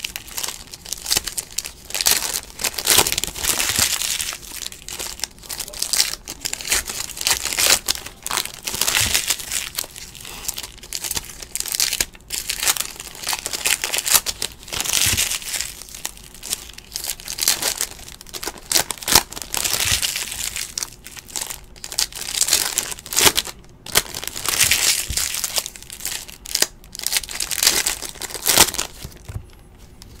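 Foil wrappers of Totally Certified basketball card packs crinkling and tearing as they are ripped open and peeled apart by hand, an irregular rustle with sharp crackles.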